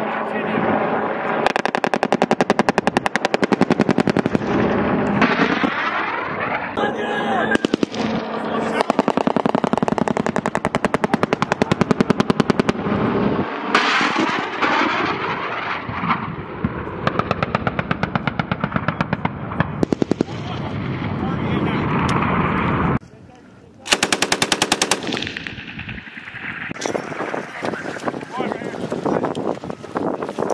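Machine-gun fire: rapid, evenly spaced reports in long strings, with an attack helicopter passing overhead. It drops off sharply for about a second near the 23rd second, then a short, dense burst follows.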